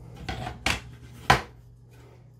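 Hard plastic diorama pieces of an action-figure set knocking together as they are handled and tried for fit: three short clacks, the last one the loudest.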